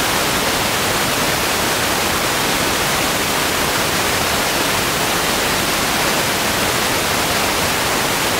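Loud, steady static hiss, even from the lowest to the highest pitches and unchanging throughout: electronic noise on the recording's audio signal rather than a sound in the room.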